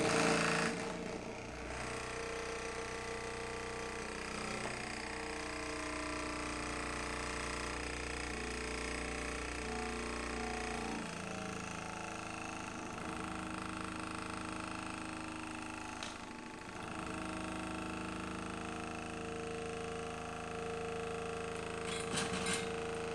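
Small brushed DC motor running steadily, spinning a magnet disc over a copper coil: a continuous mechanical whine with several steady tones. The low hum under it drops out about halfway through, and the sound dips briefly about three-quarters of the way in.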